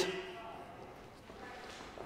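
Quiet room tone in a large gym hall, with the echo of a man's voice dying away at the start.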